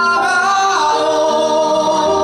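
A man singing live into a handheld microphone, holding long notes, with a change of pitch a little under a second in.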